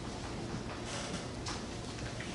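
Chalk writing on a blackboard: a few short taps and scrapes of the chalk against the board over steady room noise.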